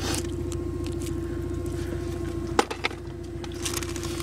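Car engine idling, heard inside the cabin as a steady low rumble with a constant hum. There are a few sharp clicks a little past halfway and near the end.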